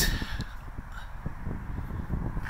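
Wind rumbling on the phone microphone outdoors, with a few faint short sounds above it.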